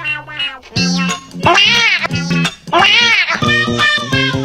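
Tabby cat meowing loudly: two long meows, each rising then falling in pitch, over music with a steady bass line.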